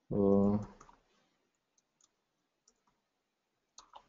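A short held 'uh' from a voice near the start, then a few faint, scattered computer keyboard clicks as a password is typed.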